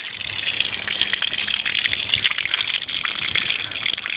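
Water from an aquaponics bell siphon running at full siphon, gushing in a steady stream out of a white PVC drain elbow and splashing onto wet concrete.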